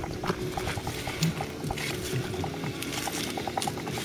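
A rapid, irregular series of short chirps from a small animal over steady outdoor background noise.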